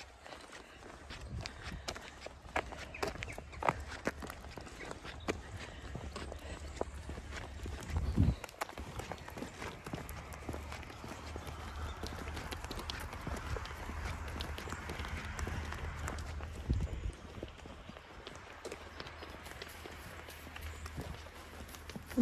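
Hooves of a small group of Zwartbles sheep clicking on a tarmac lane as they walk along, in many quick irregular ticks. There is a low rumble underneath and a louder thump about eight seconds in.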